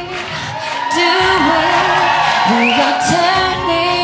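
A woman singing a slow pop ballad live, holding long notes that slide in pitch, over a band accompaniment.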